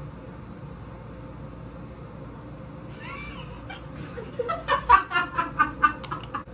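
Quiet room tone, then about halfway in a girl's high squeal, followed near the end by a fast run of high-pitched giggling laughter.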